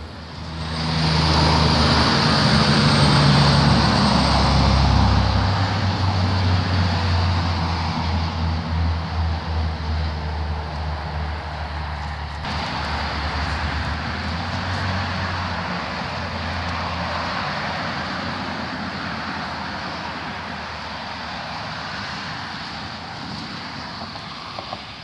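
Motor vehicle traffic passing on a road: an engine hum comes up loud about a second in and is strongest for the first few seconds, then gives way to road noise that slowly fades.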